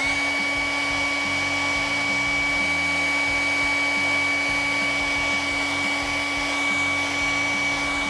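Handheld hair dryer running steadily: an even fan hiss with a constant whine on top. It is heating the plastic of stacked action figures to soften their joints so that hands, arms and boots can be popped off.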